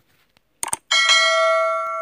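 Sound effects of an animated YouTube subscribe button: a mouse-click sound about half a second in, then a notification-bell chime about a second in that rings on steadily and slowly fades.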